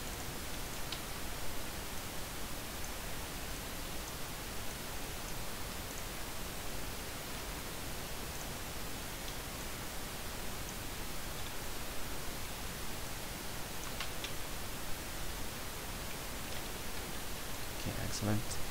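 Steady hiss of microphone recording noise, with a few faint mouse clicks.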